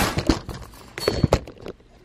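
Metal cutlery clinking and knocking in a kitchen drawer as a utensil is picked out, a handful of sharp clinks with one brief ringing clink about a second in.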